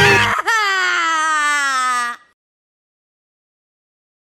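A loud crying wail that starts suddenly as the theme music ends, then slides slowly down in pitch for under two seconds before cutting off sharply.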